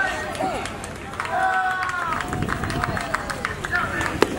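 Voices at a baseball field calling out and shouting, with a couple of long drawn-out calls, and scattered short sharp clicks in the second half.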